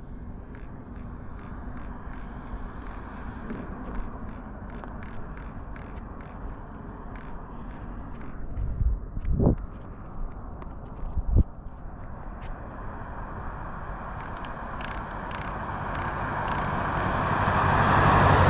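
Road traffic on a highway: a steady background of passing cars, with a vehicle approaching and growing louder over the last few seconds. Two brief thumps near the middle.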